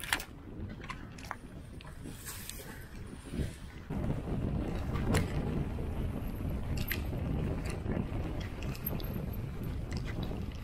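Mountain bike riding downhill on a rough dirt and stone track: tyres rolling over the ground and the bike knocking and rattling over bumps, with wind buffeting the microphone. It gets louder from about four seconds in, where the ground turns rougher.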